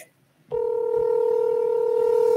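Telephone dial tone: a single steady tone that starts about half a second in, after a brief silence, with the line open and ready to dial.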